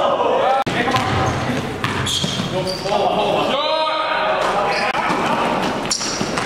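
Basketball game in a gym: a basketball bouncing on the hardwood floor and sneakers squeaking in short, high chirps, echoing in the hall.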